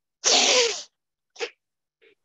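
Forceful breaths of a yoga breathing exercise: a loud rush of air lasting under a second, then a short puff about a second later.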